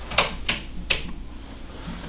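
Footsteps on a hard floor: three sharp taps about a third of a second apart in the first second, over a low steady room hum.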